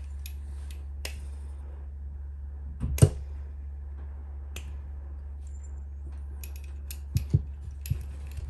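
Sparse small clicks and taps of the Align TB70's metal tail gearbox parts being handled and fitted together by hand, over a steady low hum. The sharpest click comes about three seconds in, with a few more near the end.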